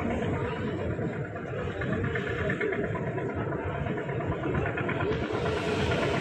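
Steady engine drone and rushing noise aboard a passenger launch under way on the river, with faint chatter from people on board.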